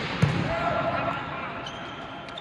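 Volleyball struck with a single sharp slap a fifth of a second in, echoing in a large indoor hall.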